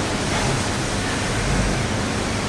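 Steady hiss of background noise with no speech and no distinct events.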